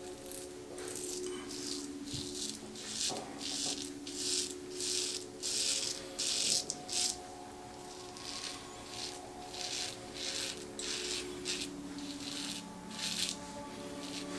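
Leaf Shave safety razor with a Gillette Nacet blade scraping through lathered neck stubble in short repeated strokes, about two a second, with a brief pause about halfway through.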